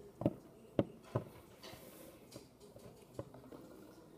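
Plastic toy pony figure tapped along a wooden tabletop as it is walked: three sharp knocks in the first second or so, then a faint tick near the end.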